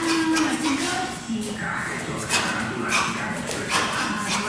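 A man's drawn-out, wordless voice, held at one pitch near the start and again about halfway through, with short sharp hissing strokes coming every half second to a second in between.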